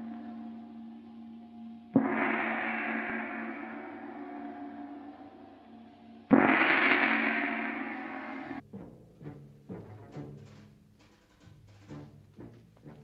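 A large gong struck twice, each stroke ringing and slowly dying away, the second stroke louder. The ringing is cut off about two-thirds of the way through, and a quieter run of short percussive hits follows.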